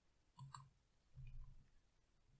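Near silence: room tone, with a couple of faint mouth clicks about half a second in and a faint low sound around a second and a half.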